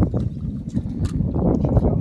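Wind rumbling on a phone microphone in a small boat on choppy lake water, with a few short faint clicks.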